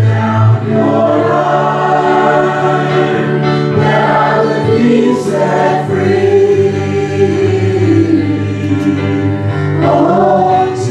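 Small worship group singing a worship song in harmony, mixed voices over keyboard accompaniment with a sustained low bass.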